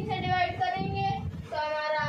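A boy's voice in a drawn-out, sing-song chant: two long held notes, the second starting about one and a half seconds in.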